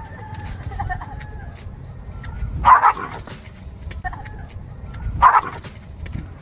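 A dog barking twice, two short sharp barks about two and a half seconds apart, over a steady low background rumble.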